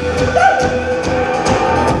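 Live acoustic band playing: strummed acoustic guitars, bass and hand percussion keeping a steady beat, with a held, sliding vocal line over them.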